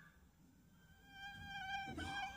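Near silence, then about halfway in a faint, high buzzing whine of a small flying insect begins. It holds one pitch with a slight waver.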